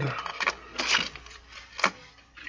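Hands handling a plastic retail package on a tabletop: short rustles and clicks, a longer rustle about a second in and a sharp click near the end.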